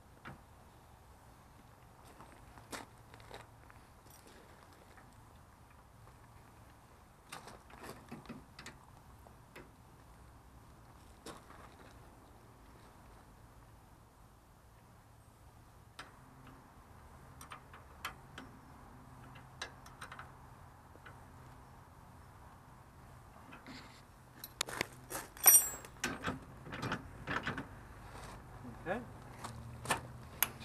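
Sparse metal clicks and clanks from a ride-on mower's steel rear tool-lift hitch being handled. Near the end comes a quick run of louder clanks and rattles.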